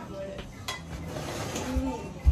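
Kitchen clatter of cutlery and dishes clinking and scraping during food preparation, with one sharp clink just under a second in.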